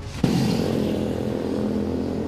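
Street traffic noise through a reporter's microphone: a motor vehicle engine running nearby. It cuts in suddenly about a quarter second in and then holds steady.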